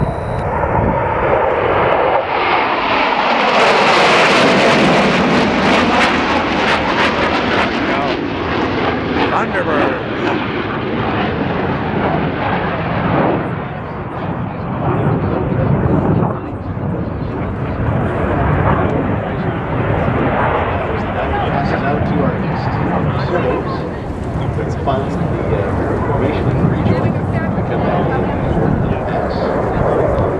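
USAF Thunderbirds F-16 Fighting Falcon jets flying over in formation. The jet roar builds to its loudest and highest about four seconds in, then drops in pitch as the formation passes. A lower, steady jet rumble carries on for the rest of the time.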